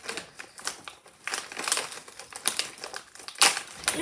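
Plastic bag of freeze-dried candy being handled and rummaged, crinkling in irregular bursts, with the loudest crackle near the end.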